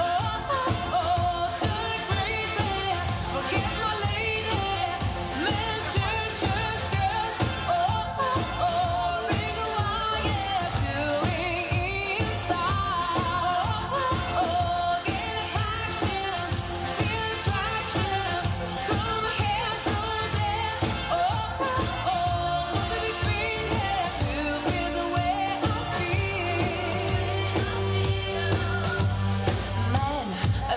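A pop song performed live: a woman singing into a microphone over a band backing with a steady beat.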